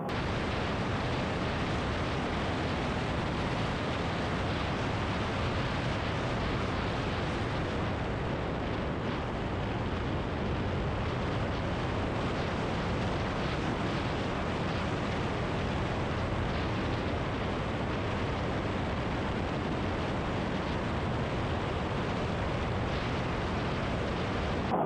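Steady rush of wind and paramotor engine noise in flight, picked up on the camera's own microphone.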